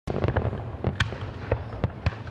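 Aerial fireworks going off: a quick string of sharp bangs and crackles over a low rumble.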